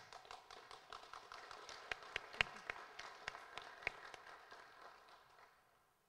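Faint applause from a small audience: scattered hand claps that build and then die away near the end.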